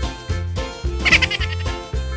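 Upbeat children's background music with a steady bass beat, and a short, wavering, bleat-like high-pitched sound effect about a second in.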